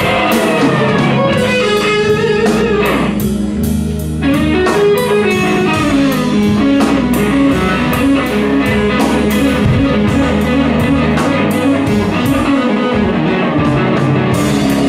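Live blues band playing a slow twelve-bar blues instrumental passage: electric guitar lead with bending notes over organ, bass and drums, with the cymbals keeping a steady beat.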